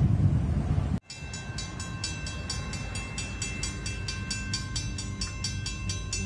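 Background music for the first second, then after a sudden cut a railroad grade-crossing warning bell ringing steadily, about three to four strikes a second.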